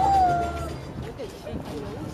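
Live pop ballad ending on a long held note from voice and band, which stops less than a second in; quieter, wavering voices follow.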